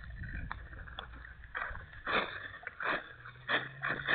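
Footsteps on a wet, gritty sidewalk, one about every two-thirds of a second, with a faint low hum coming in about three seconds in.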